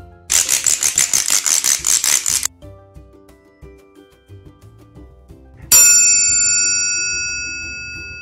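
A rapid rattle lasting about two seconds, then a single metal triangle strike about six seconds in that rings on and slowly fades, over quiet background music.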